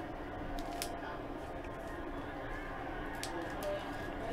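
Quiet room hum with a few faint light clicks from trading cards being handled on a table.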